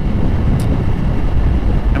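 Steady low rumble of wind buffeting an action camera's microphone on a moving motorcycle, with the bike's road noise underneath.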